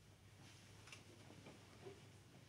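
Near silence: room tone with a few faint clicks, one just under a second in and another near the end.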